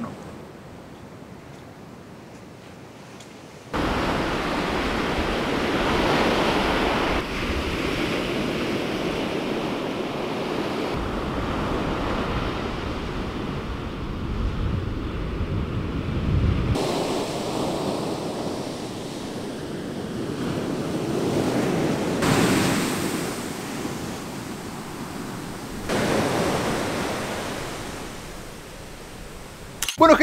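Ocean surf washing onto a sandy beach with wind, picked up by an on-camera Rode shotgun microphone with a furry windshield. About four seconds in the sound jumps suddenly louder, and its character shifts abruptly several more times.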